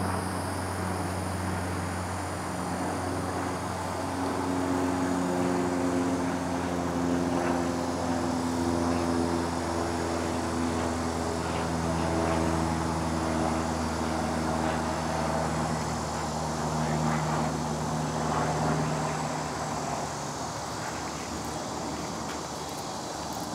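A distant engine drone: a steady low hum at several pitches that slowly swells through the middle and eases near the end.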